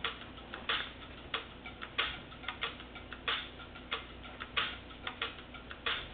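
Fingertips tapping on a table in an irregular patter, imitating rain, with a louder tap about every two-thirds of a second and lighter taps between.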